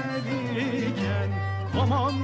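Turkish art-music ensemble playing an instrumental passage in makam Muhayyer Kürdi: strings carry a wavering melody with vibrato over a steady low sustained bass note.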